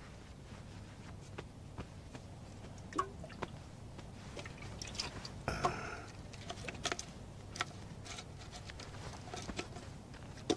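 Faint handling noises from a canteen being passed between two men: scattered light clicks and rustles, with a brief scuffle about five and a half seconds in, over a low steady hum.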